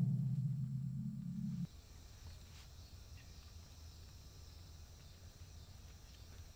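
A low, steady hum fades and cuts off suddenly a little under two seconds in. Faint outdoor ambience with a few faint high ticks follows.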